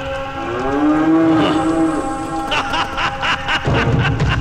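A long, low, moo-like drawn-out call that slides slightly up in pitch, followed about halfway through by a quick run of short, choppy sounds.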